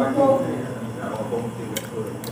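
A voice speaking briefly at the start, then a quieter stretch with a single sharp click near the end.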